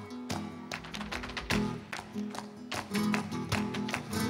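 Live flamenco music: acoustic guitar playing, with frequent sharp percussive strikes over it.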